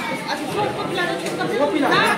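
Several people talking over one another: indistinct conversational chatter, with no words standing out.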